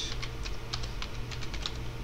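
Computer keyboard typing: a quick run of about a dozen key clicks that stops shortly before the end.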